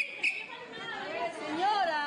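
Background chatter of voices, with a brief high steady tone at the very start and a voice rising and falling near the end.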